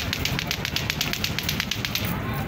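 Rapid, even clicking, about ten sharp clicks a second, over a low outdoor rumble.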